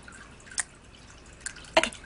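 A short, sharp drip-like click about half a second in and a fainter one later, over quiet room tone, just before a spoken "okay" at the very end.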